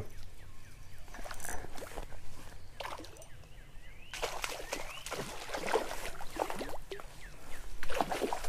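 A hooked rainbow trout splashing and thrashing at the water's surface as it is reeled in on a spinning rod: an irregular run of short splashes and sloshes.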